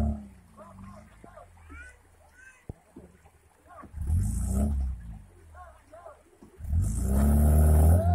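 Off-road 4x4 engine revving hard in two bursts, about four seconds in and again, louder and longer, from about seven seconds, as the vehicle strains over rocks in a stream bed. Spectators' voices are heard between the revs.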